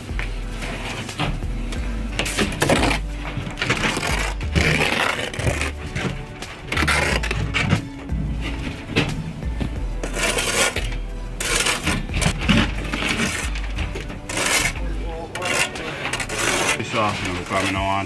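Steel brick trowel scraping and clinking against mortar and brick as mortar is spread along the top of a wall, in many short strokes. Background music with a steady bass line plays under it.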